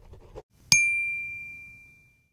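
Pen-scribble sound effect that stops about half a second in, then a single bright ding that rings on one clear tone and fades over about a second as a logo finishes being written.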